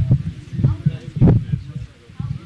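Indistinct, muffled talk mixed with irregular low thumps. The loudest stroke comes a little past the middle, and it all fades near the end.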